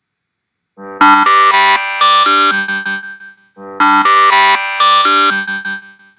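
Countdown timer's end-of-time alarm: a short tune of quick notes that starts about a second in and repeats roughly every three seconds, signalling that the time is up.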